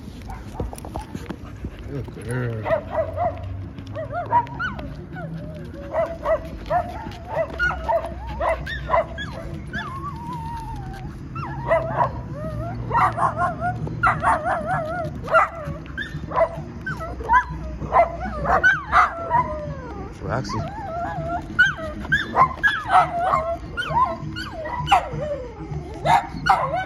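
A pocket American bully dog whining and yelping over and over in short, high, wavering cries that come thicker in the second half.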